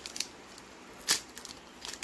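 Foil wrapper of a trading-card booster pack being pulled at by hand as it resists opening: a few faint crinkles and ticks, with one sharp crackle about a second in.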